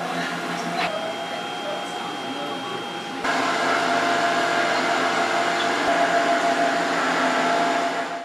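Steady mechanical whir and hum of radiation therapy machinery, with a thin high whine over it for the first three seconds; about three seconds in the sound steps up, louder and fuller, and runs on evenly.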